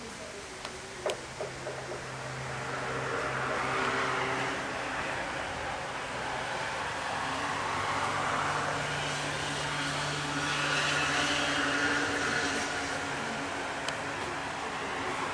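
Road traffic passing: car engines humming with tyre noise that swells and fades several times as vehicles go by. A few sharp clicks about a second in.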